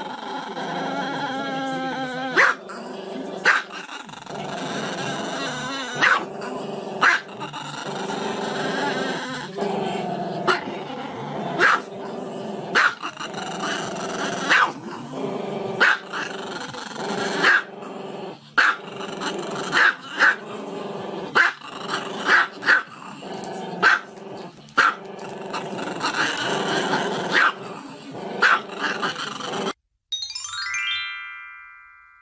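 A small black-and-tan dog growling continuously with its head raised, broken by sharp barks about once a second.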